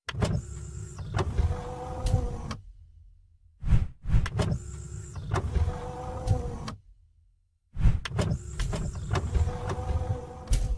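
Sound effects for an animated end-screen graphic: a mechanical sliding-and-clunking sweep, like a motorised panel moving, played three times in a row about every four seconds with brief silences between.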